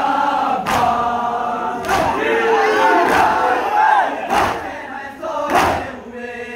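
A crowd of men chanting a noha together, with a loud collective matam chest-beat, open hands slapping chests in unison, about every 1.2 seconds: Shia Muharram mourning.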